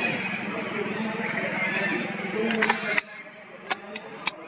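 Voices of people talking in the background over a steady low hum, cutting off abruptly about three seconds in. A sharp click follows near the end.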